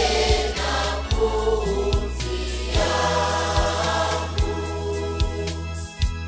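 Choir singing a Swahili church song over electronic organ accompaniment, with a steady bass and a beat about every 0.8 s.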